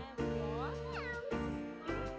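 Upbeat children's backing music, with a short cluster of high, gliding squeaks from a cartoon mouse sound effect about half a second in.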